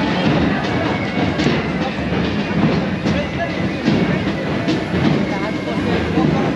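Dense road traffic noise from a procession of many motorcycles and cars running together, a steady loud din with voices mixed in.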